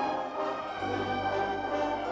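A children's wind band of flutes, clarinets, saxophones and brass playing sustained chords, with a low bass note coming in a little under a second in.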